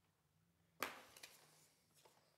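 A single sharp knock about a second in, followed by two faint ticks, over quiet room tone.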